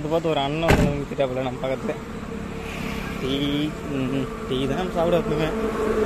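Voices talking in untranscribed conversation, with one sharp knock less than a second in.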